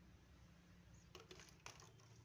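Near silence over a steady low room hum; in the second half a few faint light clicks and taps as a kitten noses at an empty plastic water bottle on a tile floor.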